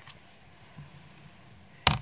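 Quiet handling of the Stamparatus stamp-positioning tool while the stamp is pressed onto the card, then one sharp plastic clack near the end as its hinged clear acrylic plate is lifted off the stamped card.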